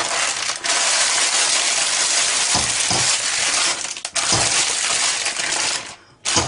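Stiff parchment baking paper crinkling and rustling loudly as it is pressed and folded by hand into a cake tin, with short breaks about half a second in and about four seconds in, stopping just before the end.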